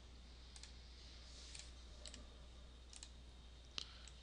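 Faint computer mouse clicks over a low steady hum: a few scattered clicks, with a sharper one near the end.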